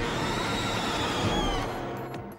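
Monster-film sound mix: a steady, dense rumble of explosions and destruction with music beneath, and a thin high cry that slides down in pitch about one and a half seconds in, fading out just before the end.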